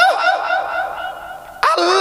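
A man's voice through a public-address loudspeaker trailing off with a lingering echo, then breaking out loudly again about a second and a half in.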